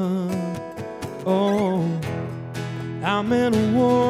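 Live acoustic music: a man singing long held notes over two strummed steel-string acoustic guitars, with a short break in the voice near the middle before the next held phrase.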